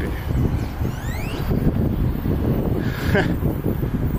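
Wind buffeting the microphone of a camera on a moving bicycle, a steady low rumble, with a faint rising whistle about a second in.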